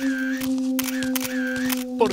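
Cartoon camera shutter sound effect, snapping about three times, over a steady held note in the background music.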